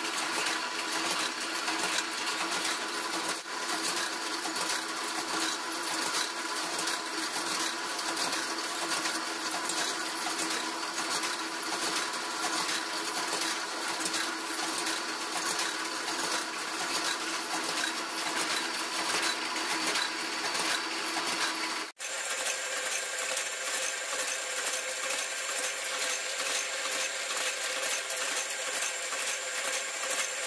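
Steady mechanical running noise with fast metallic clinking throughout. It cuts out sharply about two-thirds of the way in and resumes with a somewhat different pitch.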